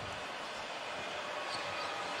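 Faint, steady arena background noise from a basketball game in play, with the ball being dribbled up the court.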